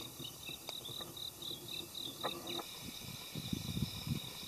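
An insect calling steadily in a high-pitched pulsed chirp, about five pulses a second, more even toward the end. Low rumbling thumps come in during the last second or so.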